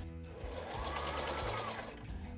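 Brother domestic sewing machine running steadily, stitching a seam.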